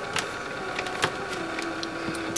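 A few small clicks from clip leads being handled and attached to a transformer winding, over a steady faint electrical hum.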